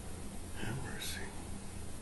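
A man's brief whisper, about half a second in, over a steady low hum.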